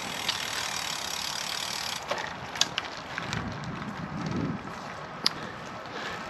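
Canyon Endurace CF SLX carbon road bike being ridden: a steady rush of wind and tyre noise, with a few sharp clicks and a low rumble swelling about halfway through.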